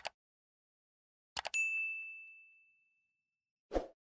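Subscribe-button animation sound effect: quick pairs of mouse clicks, then a single notification bell ding that rings out and fades over about a second, and a brief soft sound near the end.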